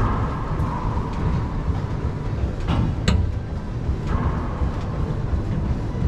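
Racquetball rally on an enclosed court: sharp smacks of the ball off racquets and walls, one near the start and two close together about three seconds in, each ringing briefly in the court. A steady low rumble runs underneath.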